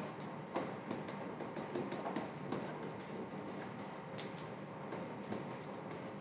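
Stylus tapping against an interactive board's surface while handwriting numbers: an irregular run of light clicks, several a second.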